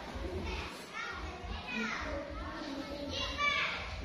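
Children's voices chattering in a classroom, several high-pitched kids talking, busiest about a second in and again near the end.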